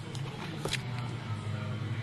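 A few light clicks and taps from a small plywood model being handled, over a steady low hum.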